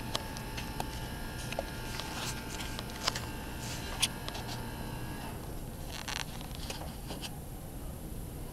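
A steady machine hum with a faint high tone in it that cuts out about five seconds in, with scattered light clicks and taps.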